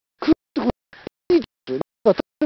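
A voice broken into short, choppy fragments about twice a second, each cut off abruptly with silence between.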